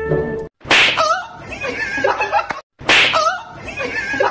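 A loud, sharp slap, followed by a short wavering pitched sound, repeated almost exactly about two seconds later as an edited replay.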